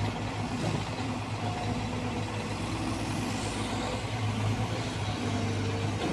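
Diesel engine of a Caterpillar 320 hydraulic excavator running steadily while it works, a constant low drone.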